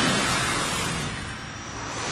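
Cartoon spaceship sound effect: a rushing whoosh that fades away steadily.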